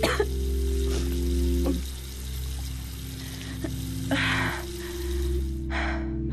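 Water running from a bathroom basin tap and splashing as hands wash the face, a steady hiss that stops near the end.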